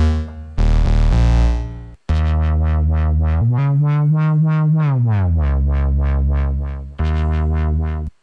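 Bass presets of the Shaper iOS synthesizer played on the keyboard: a few short, overtone-rich bass notes, then the 'Wobble Bass' patch holding a note that pulses about four times a second while gliding up in pitch and back down, with glide switched on.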